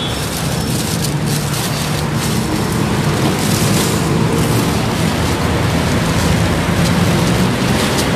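Road traffic and a running vehicle: a steady low engine hum under a loud, even rushing noise.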